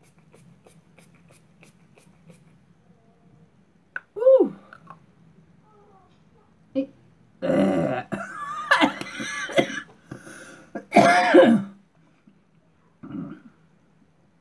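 A few faint spritzes from a makeup fixing spray's mist pump, then a woman coughing and clearing her throat in several hoarse fits, the loudest near the end.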